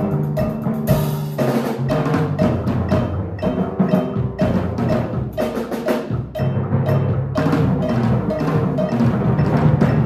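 Drum kit and timpani played together: rapid drum strikes over low, pitched timpani notes that ring and change pitch, with a crash about a second in.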